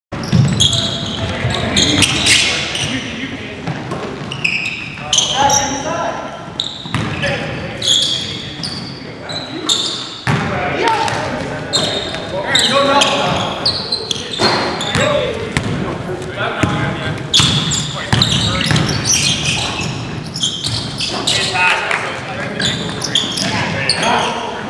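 Basketball game on a hardwood gym floor: the ball bouncing as it is dribbled, sneakers squeaking in short high chirps, and players calling out, all echoing in the gym.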